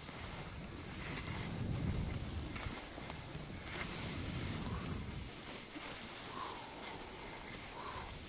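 Skis sliding and scraping over packed snow, with wind rumbling on the microphone that dies down about five seconds in.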